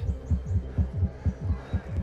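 Dramatic underscore music reduced to a low, fast, even bass pulse, about six throbs a second, with a faint hum beneath it.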